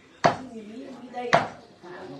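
Two sharp chopping knocks, about a second apart, of a cleaver striking down on a stack of paper.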